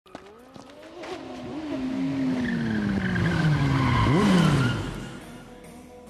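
Motorcycle engine approaching and slowing: its pitch steps down with several quick revs in between. It is loudest about four seconds in, then fades away.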